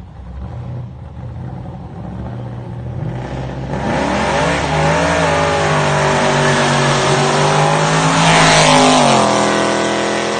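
A car engine accelerating hard, growing louder over several seconds as it comes closer and loudest near the end. Its pitch drops about nine seconds in, as at a gear change.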